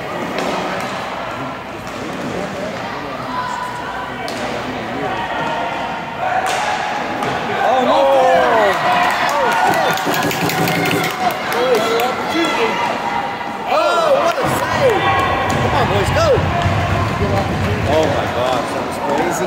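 Roller hockey play echoing in an arena: sharp clacks of sticks on the puck and the boards, and short squeaks from skates on the plastic rink floor, with voices in the hall. The squeaks come thickly from about halfway through.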